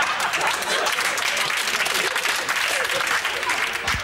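A small group clapping, mixed with laughter and voices.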